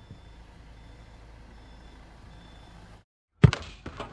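Taxi van's engine running as it reverses, with faint high reversing beeps coming and going. It stops about three seconds in, and a loud sudden hit from a logo sting follows shortly before the end.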